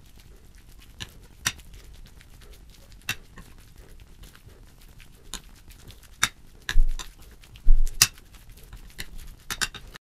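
Spoon stirring diced banana and hazelnut tahini in a plate, with irregular clinks and taps of the spoon against the plate, the loudest a few in quick succession about two thirds of the way through.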